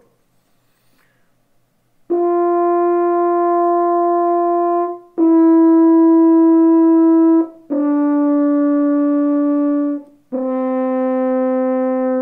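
Double French horn played with a plain straight tone and no vibrato, which the player calls lifeless. Four long held notes, each two to three seconds, step down in pitch one after another, starting about two seconds in.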